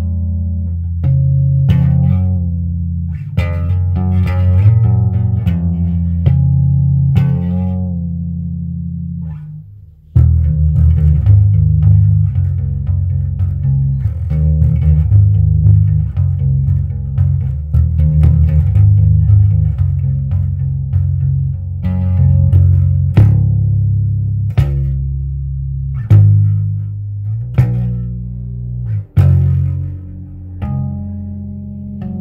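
Electric bass guitar played in double-thumb thumping style with tremolo-picked notes from the fingers: a dense run of fast, percussive low notes. The playing breaks off briefly about ten seconds in, then carries on.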